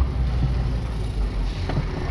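Inside the cab of a semi-trailer truck driving slowly over a cobbled street: a steady low engine rumble with road noise.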